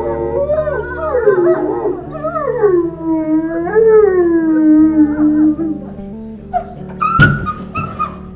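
Two wolves howling together, their voices overlapping and gliding up and down; one howl falls into a long low held note that stops at about six seconds. A single sharp, sudden sound comes near the end.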